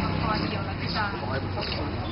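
Indistinct voices speaking over a steady low hum and background noise.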